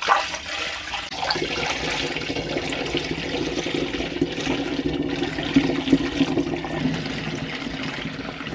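Coffee, cocoa and whey liquid pouring in a continuous stream from a pot into a glass demijohn, splashing as the jar fills.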